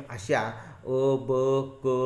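A man's voice in long, held syllables at a fairly level pitch, speech drawn out in a sing-song, chant-like way.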